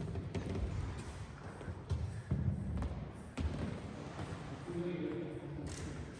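Indistinct, low murmur of voices with a few light knocks and handling thumps.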